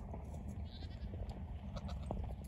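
A goat bleating faintly about two-thirds of a second in, over a steady low rumble of wind and handling noise on the phone's microphone.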